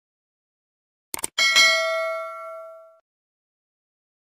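Two quick clicks, then a single bright bell ding that rings out and fades over about a second and a half: a subscribe-and-notification-bell sound effect.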